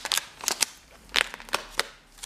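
Clear plastic album sleeves crackling as a page of a binder of postal cards is turned and handled, with several sharp, separate crinkles and clicks.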